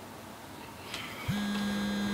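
Quiet room tone, then a steady low hum starts a little over halfway through and holds.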